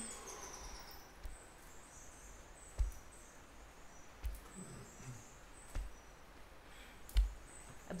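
Soft thumps about every second and a half as swinging arms slap against the body in a standing spinal twist, over faint high-pitched bird chirping.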